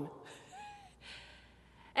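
A pause in a woman's speech at a pulpit microphone. A faint short vocal sound comes about half a second in, then a soft breath is drawn in near the end before she speaks again.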